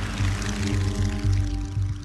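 Background music: a held chord of steady sustained tones over a low rumble.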